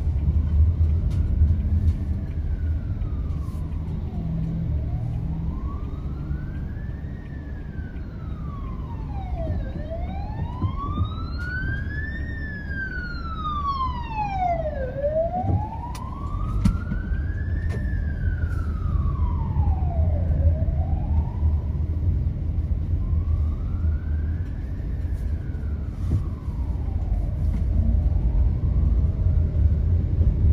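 Emergency vehicle's wail siren sweeping slowly up and down, each rise and fall taking about five seconds, growing louder toward the middle and fading again. Under it runs the steady low rumble of traffic and the moving vehicle.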